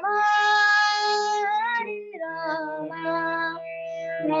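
A young girl singing, accompanying herself on an electronic keyboard: she holds one long note for about a second and a half, then steps down through lower notes over steady held keyboard chords.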